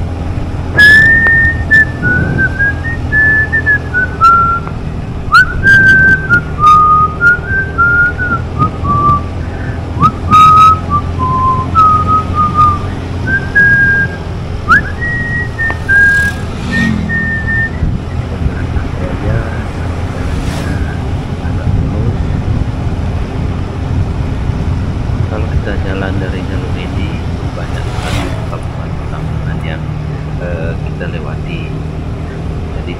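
A person whistling a wandering tune for about the first seventeen seconds, over the steady low drone of a motorcycle engine and wind on the microphone. After the tune stops, only the engine and wind remain.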